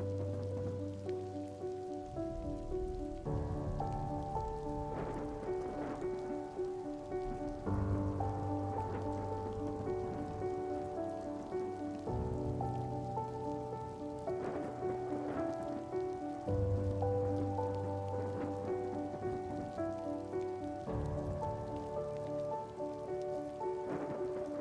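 Slow background music of held chords that change about every four to five seconds, mixed with steady rain falling.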